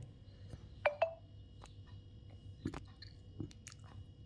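A few faint clicks and mouth noises close to the microphone, with one brief pitched sound about a second in, over a faint steady high tone.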